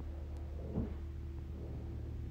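Low steady background hum of the recording, with one faint short sound a little under a second in.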